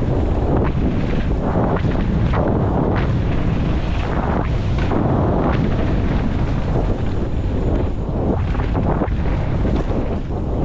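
Wind buffeting a helmet-mounted camera's microphone during a fast mountain-bike descent, with the tyres rumbling over a dirt trail and frequent short bumps and rattles from the bike.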